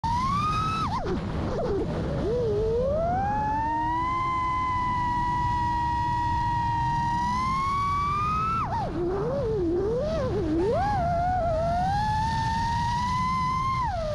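FPV racing quadcopter's brushless motors and propellers whining, the pitch rising and falling with the throttle: held steady for a few seconds, dipping sharply about a second in and again near nine seconds, wavering, then climbing again. A steady rush of wind from the propellers runs underneath.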